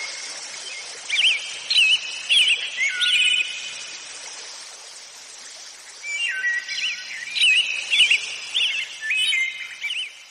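Birds chirping and singing over a steady hiss of outdoor ambience, in two spells with a quieter lull in the middle.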